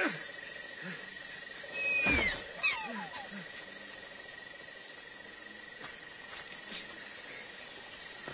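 Film soundtrack of a rainy night jungle. A steady high frog-like drone runs throughout. About two seconds in comes a loud animal call that glides downward, followed by a few short falling chirps.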